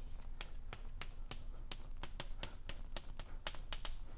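Chalk writing on a blackboard: a quick, irregular string of sharp taps and clicks as the chalk strikes and strokes the board.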